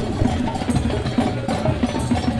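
A drum circle: many drums played together, giving a busy, steady stream of short hits.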